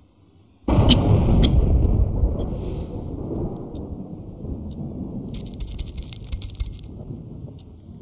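A cough, set against a sudden loud, deep rumble that starts under a second in and fades slowly over about seven seconds.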